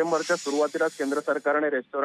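A hissing whoosh sound effect under a wipe graphic, fading out about a second in. It plays over a voice talking on a narrow-sounding telephone line.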